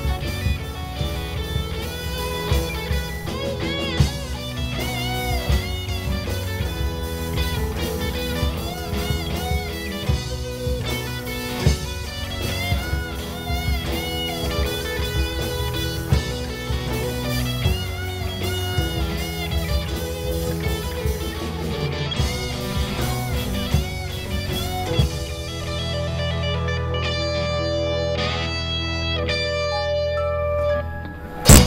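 Live teen rock band playing an instrumental passage: electric guitar lead with bending notes over bass guitar, keyboard and drum kit. About 25 seconds in the drums stop and the band holds one ringing chord to the end.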